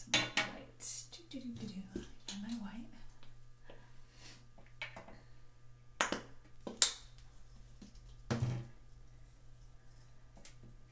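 Hands working paint on a sketchbook page: a string of sharp clicks and taps, the loudest about six and seven seconds in, with a brief low mumble of voice early on.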